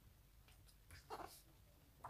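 Near silence: room tone, with one faint, short sound about a second in.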